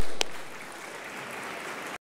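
Audience applauding, opening with a couple of sharp knocks before the clapping settles into a steady patter.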